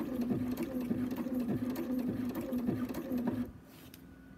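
Bernina sewing machine running steadily as it stitches paraglider line, with a steady hum and the regular tick of the needle, stopping about three and a half seconds in.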